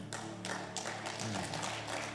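Soft background music of held, sustained notes, with several light taps scattered through it.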